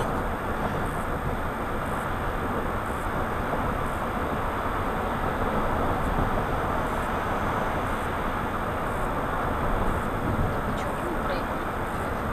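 Steady road and engine noise of a car at freeway speed, heard from inside the cabin.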